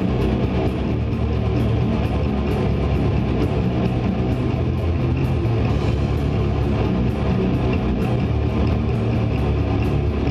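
Live old-school death metal band playing: distorted electric guitars, bass and drums in a dense, steady wall of sound, with cymbal strokes about four a second.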